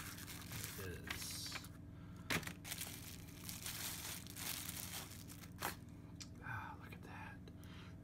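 Packaging crinkling and tearing as a new folding knife is unwrapped, with a few sharp clicks along the way; the busiest rustling comes about a second in.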